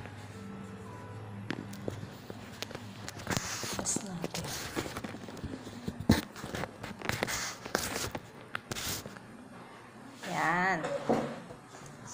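Hands at work on a plastic tray of flour-dusted Turkish delight: scattered taps, knocks and rubbing, busiest in the middle. A brief wavering voice sounds near the end.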